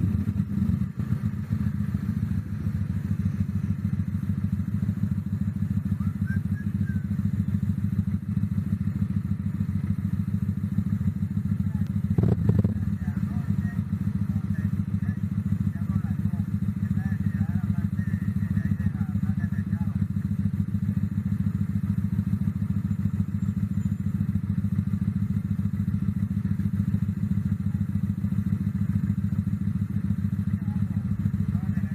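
Street traffic at a city intersection: a steady low rumble of motorcycle and vehicle engines, with faint voices and a brief knock about twelve seconds in.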